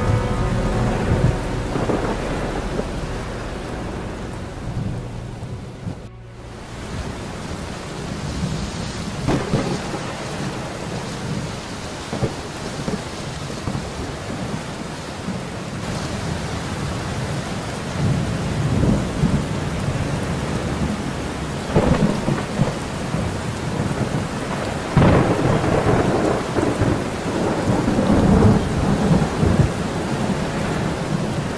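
Thunderstorm sound effect: steady rain with rolls of thunder that grow heavier in the second half. There is a brief dip in the sound about six seconds in.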